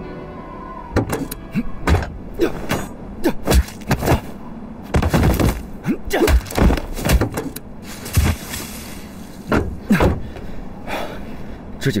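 Film soundtrack: music in the first second, then a run of irregular knocks and thumps, with a few short vocal sounds among them.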